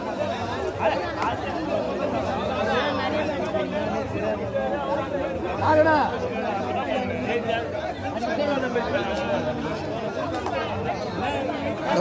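Chatter of a large crowd of spectators, with many voices talking and calling out over one another. One voice rises louder about six seconds in.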